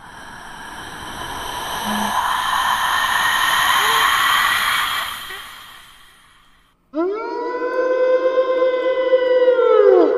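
Eerie horror-style sound effects. A hissing, whooshing swell builds for about four seconds and fades away. Then, about seven seconds in, a sudden sustained synthesized siren-like tone starts, and near the end it bends downward in pitch.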